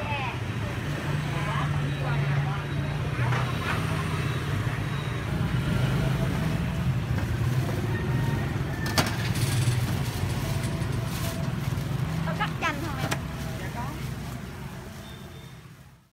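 Busy street sounds: motorbike engines running close by with a steady low hum, indistinct voices now and then, and a single sharp click about nine seconds in. The sound fades out over the last two seconds.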